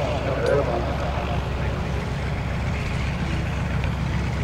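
Piper Super Cub's engine and propeller running steadily as the plane moves low along the runway.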